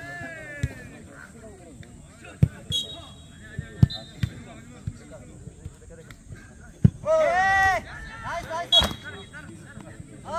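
A jokgu ball being kicked and bouncing on the court during a rally: a series of sharp smacks, four of them loudest, a second or two apart. Just after the third loud smack a player gives a long, loud shout, with shorter calls between the hits.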